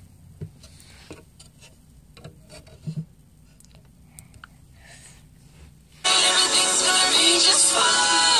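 Faint rustling and small clicks, then a song with sung vocals cuts in abruptly and loudly about six seconds in.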